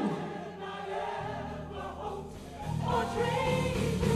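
Gospel choir singing a quiet, held passage with low sustained accompaniment, growing louder about three seconds in.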